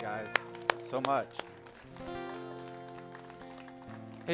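Acoustic guitar played softly: a chord left ringing, a few sharp clicks in the first second and a half, then a new chord held quietly from about halfway.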